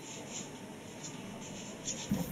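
Faint, irregular scratching sounds, a few a second, over low background hiss.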